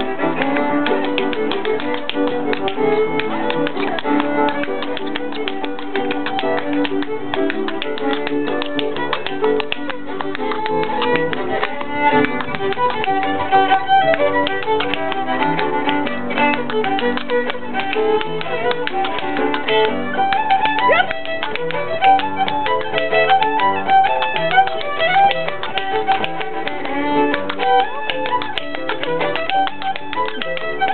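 A lively Irish traditional tune played live, with a dancer's percussive steps tapping in quick rhythm on the floor throughout.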